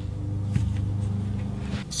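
A steady low hum in the background, with a few faint clicks about half a second in as the opened starter solenoid's halves are handled.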